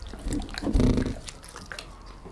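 German Shepherd chewing and picking up small pieces of cooked chicken heart from a tabletop: scattered wet mouth clicks, with a louder chomp just under a second in.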